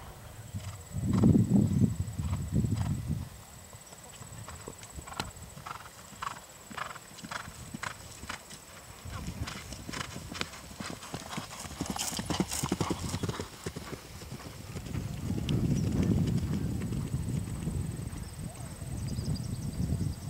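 A horse galloping on grass, its hoofbeats in a steady rhythm that grows louder through the middle as it comes close. A louder low rumble is heard near the start and again past the middle.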